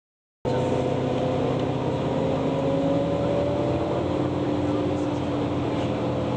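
Steady drone of a moving road vehicle heard from inside, a low engine hum under road noise, starting about half a second in after a brief silence.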